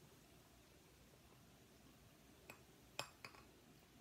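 Near silence, broken by three light clinks about two and a half to three and a quarter seconds in, the middle one loudest: an upturned soda bottle knocking against the rim of a glass.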